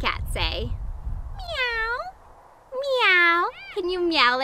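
Cat meowing twice, two drawn-out meows about a second apart, each dipping and then rising in pitch.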